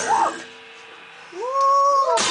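The band stops in a break of the song, leaving only a faint note ringing. Then a male singer's voice slides up into a long held high note, falling off as acoustic guitars and drums crash back in just after.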